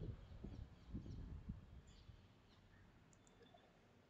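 Near silence, with a few faint clicks in the first second and a half.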